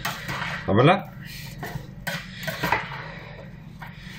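A slotted spoon stirring milk-soaked bread cubes and diced onion in a bowl, with repeated scraping and knocking of the spoon against the bowl.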